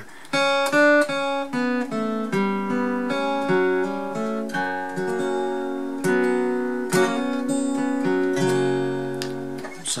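Steel-string acoustic guitar with a capo at the second fret, played note by note in a slow melodic line, the notes ringing over one another. A low bass note comes in near the end and rings on.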